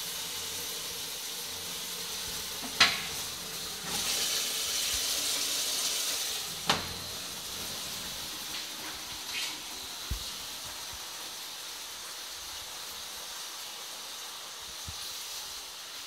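Dudley Elite low-level toilet cistern refilling after a flush: a steady hiss of water through the inlet valve that grows quieter in the second half. Two sharp clicks come about three and seven seconds in.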